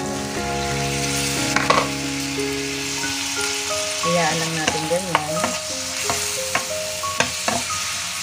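Sautéed onions and ground spices sizzling in hot oil in a pan while being stirred, with several sharp knocks of the stirring utensil against the pan.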